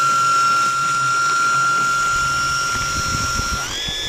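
Electric pump of a Gloria Multijet 18V cordless medium-pressure sprayer running with a steady high whine while it shoots a straight jet of water, drawing the water from a plastic bottle. Near the end the whine steps up in pitch.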